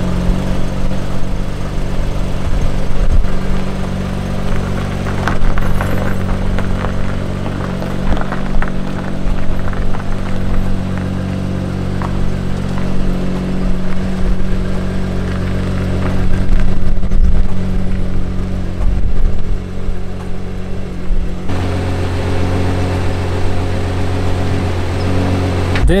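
Honda Crosstour's engine idling steadily while the car is backed slowly into the carport, a low even hum that holds one pitch throughout.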